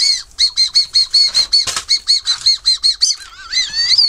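Coris Fue Ramune whistle candy blown through the lips, giving a rapid string of short, high-pitched toots, about five a second. Near the end the toots give way to a wavering whistle that slides upward.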